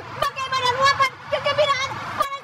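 A high-pitched voice talking quickly, its pitch swooping up and down, over a faint low background hum.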